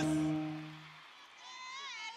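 The last held notes of a live Amazigh folk music performance, voices and instruments, fading out about a second in. Faint voices with sliding pitch follow.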